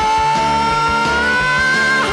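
Psychedelic rock band music, instrumental: one long, high lead note is held and slowly bends upward in pitch over the band's backing.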